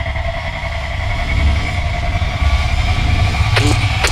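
Produced intro soundtrack: a deep, steady rumble with a few held tones above it, growing slightly louder. Near the end a voice-like sound begins.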